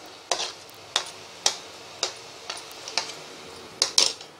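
A spatula knocking and scraping against a plate and a metal pan about twice a second as boiled mushroom pieces are pushed into a pan of tomato gravy. A soft, steady sizzle of the simmering gravy runs underneath.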